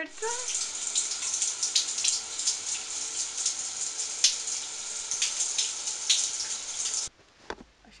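Shower running: a steady spray of water hissing onto a tiled shower, which cuts off suddenly about seven seconds in.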